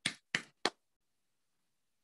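A woman clapping her hands three times, about a third of a second apart, heard over a video call.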